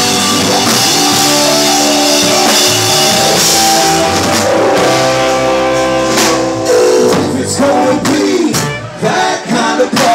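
Live band playing loudly: drums, guitar and keyboard with singing. About seven seconds in, the full band thins out and a voice carries on over sparser backing.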